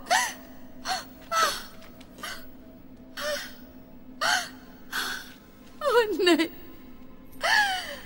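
A woman sobbing in a string of short, gasping cries, several of them breaking and falling in pitch, over a faint steady low hum.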